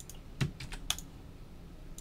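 Computer keyboard keys tapped: about five quick clicks in the first second, then only a low background hum.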